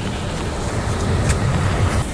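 Steady low outdoor rumble with no distinct event: background noise such as wind on the microphone or nearby road traffic.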